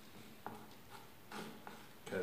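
Faint scraping and two light clicks of a mixing stick working two-part epoxy fairing compound on a mixing board.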